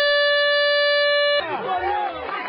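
Handheld aerosol air horn sounding one long, steady, loud blast as the starting signal for a race; it cuts off suddenly about a second and a half in, and voices follow.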